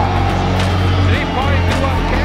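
Background music with a steady bass line, with voices over it.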